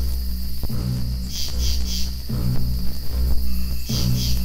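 Dark trailer score: low sustained bass notes that shift every second or so, with a steady high-pitched chirring above them.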